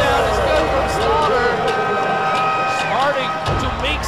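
Televised basketball game sound: voices from the broadcast and the arena, with music underneath.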